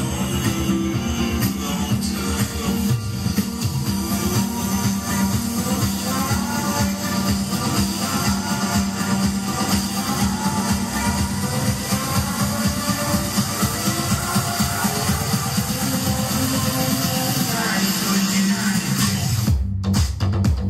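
Music with a strong, fast bass beat played loud through two Sony mini hi-fi systems, an MHC-GPX77 and an MHC-GPX8, running together for a heavy sound. The music briefly cuts out near the end.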